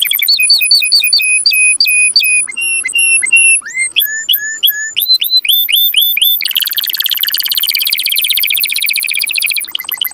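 Domestic canary singing: a song built of short phrases, each one a single note repeated several times a second before switching to a new note type, with rising sweeps in the middle, then a long, very fast trill through the second half.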